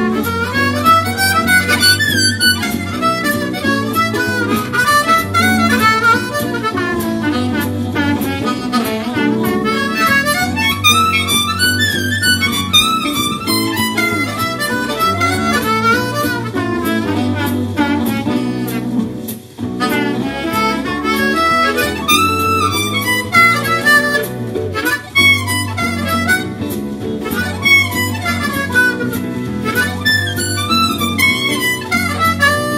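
Seydel 1847 Classic diatonic harmonica in A playing a fast boogie tune in third position (B minor), the melody bending and moving quickly over a steady low accompaniment. The playing breaks off briefly at about two-thirds of the way through, then carries on.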